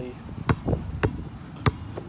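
A basketball dribbled on hard ground: three sharp bounces about half a second apart.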